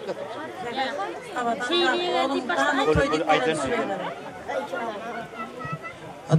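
Several voices chattering, talking over one another without clear words.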